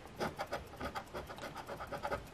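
A round scratcher tool rubbing back and forth on a scratch-off lottery ticket, scraping off the coating over the numbers in quick, even strokes, about six or seven a second.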